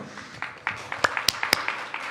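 Small audience applauding: a handful of people clapping unevenly, with a few sharp single claps standing out near the middle.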